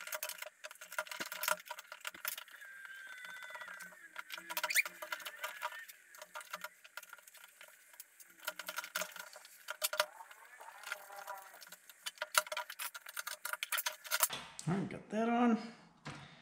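Small metal and plastic parts clicking, tapping and rattling as a fuel pump sending unit is handled on a workbench, with the metal hose clamps jingling while the discharge hose is taken off and refitted.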